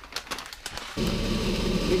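Clicks and rubbing from a handheld camera being moved. About a second in, a steady mechanical hum starts abruptly and carries on.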